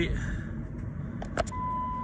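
Road and engine noise inside a moving car's cabin at motorway speed. About one and a half seconds in, a faint steady electronic warning tone returns: the seatbelt reminder, as the driver has not fastened his belt.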